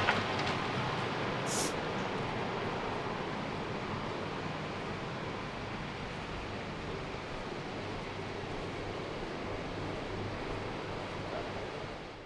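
Steady outdoor background noise with no distinct source, with a short sharp click at the very start and a brief high hiss about a second and a half in.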